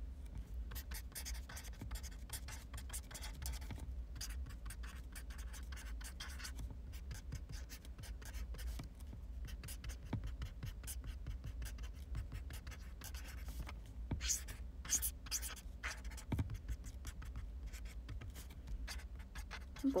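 Small, light clicks and scratches of hands working at something on a desk, in a dense run with a few sharper clicks in the middle and later, over a steady low hum.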